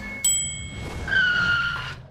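Cartoon sound effects: a sudden bright ding as a traffic light changes, then a loud skidding brake screech, falling slightly in pitch, as a rocket ship pulls up at the red light.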